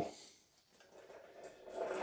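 Quiet room tone in a small workshop, with only faint indistinct noise after the last word trails off at the very start.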